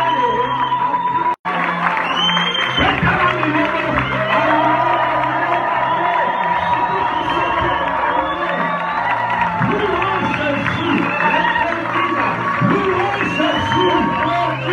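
Live church worship music: voices singing through a microphone over keyboard and bass, with the congregation joining in. The sound drops out suddenly for a moment about a second and a half in.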